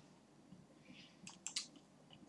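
Near silence with a few faint, brief clicks about one and a half seconds in.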